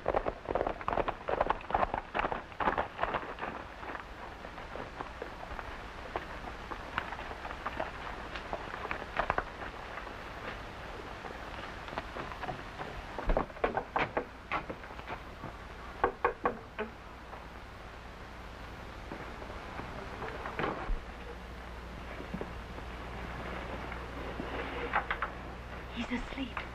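Surface noise of a worn 1940 optical film soundtrack: steady hiss over a low hum, with irregular crackles and sharp pops throughout, clustered in a few spots including one about halfway through.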